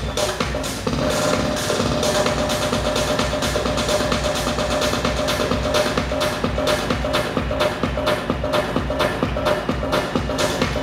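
A DJ's live set of electronic dance music played loud over a club sound system, with a steady, evenly spaced beat; about a second in, sustained synth tones come in over it.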